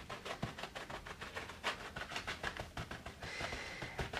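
Wadded paper towel dabbing and rubbing over a page textured with dried glass bead gel, blotting up wet India ink: a quick, irregular run of soft scuffs, several a second.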